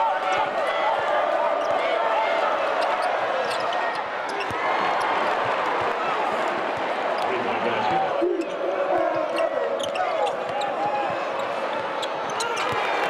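Basketball game in an arena: a steady din of crowd voices with a basketball dribbled on the hardwood court and short sharp sounds of play on the floor.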